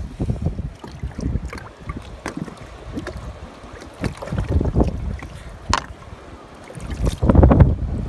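Wind gusting against the microphone, with a few sharp clicks and scrapes from a knife scraping parasites off a hawksbill sea turtle's flipper scales. The loudest gust comes near the end.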